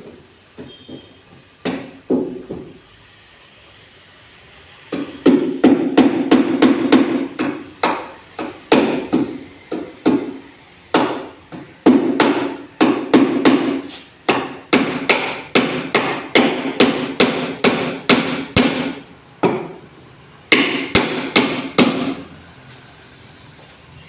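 Hammer driving nails into wooden formwork boards: a few scattered blows, then after a pause about five seconds in, quick runs of strikes, several a second, broken by short gaps and stopping about two seconds before the end.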